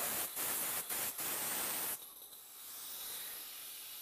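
Compressed air hissing out of a dental unit compressor's oil filter drain as its push button is held, a loud hiss briefly broken a few times, which cuts off sharply about two seconds in. A fainter steady hiss of air goes on behind it from the air reservoir, still draining through its opened drain nut.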